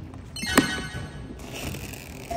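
Plastic toy treasure chest's latch clicking open once, about half a second in, followed by a brief rustle as the lid lifts; background music plays underneath.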